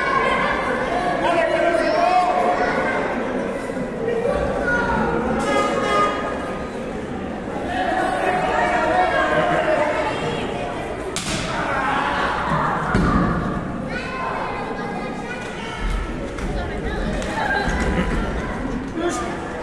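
Spectators shouting and talking over one another, with scattered thuds and slaps of wrestlers' bodies hitting the ring canvas and blows landing.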